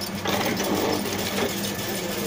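Automatic servo-driven double chain link fence machine running, with a steady hum under a dense mechanical clatter and a few sharper knocks as it weaves wire mesh.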